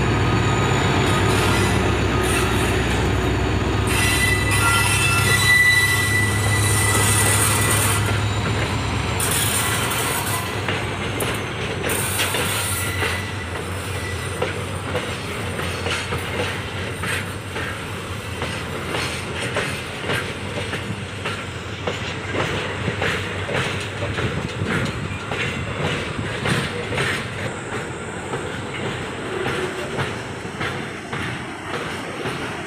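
A diesel locomotive passes close with its engine running in a low hum, and a thin high wheel squeal comes a few seconds in. From about nine seconds in the engine sound fades and the container wagons follow, rattling and clacking over the rail joints.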